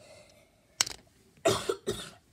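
A person coughing: one short sharp cough about a second in, then a louder double cough near the end.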